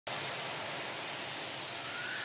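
Steady hiss of noise that starts abruptly, with a faint rising tone coming in near the end: an edited whoosh/riser sound effect building toward the intro music.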